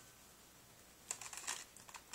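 Near quiet at first, then from about a second in, faint irregular clicks and rustling as a plastic toy gun and plush toys are handled.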